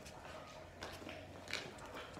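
Footsteps on a tile floor as a large dog and a person take a couple of steps. There are a few faint taps, the clearest about one and a half seconds in.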